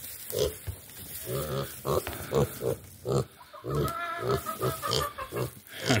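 Kunekune pig grunting at close range: a string of short grunts, with one longer drawn-out grunt about four seconds in.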